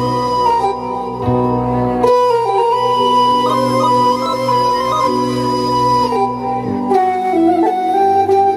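Electronic keyboard playing a sustained melody line that steps between notes, over held bass notes that stop about seven seconds in.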